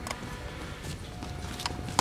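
Horse galloping on soft arena dirt, a few hoofbeats about three-quarters of a second apart, with faint music in the background.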